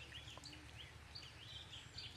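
Faint outdoor ambience of small birds chirping, many short high notes overlapping in quick succession, over a low steady rumble.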